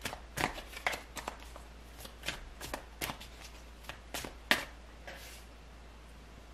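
A deck of tarot cards being shuffled by hand: an irregular run of short, crisp card snaps and slaps, thinning out near the end.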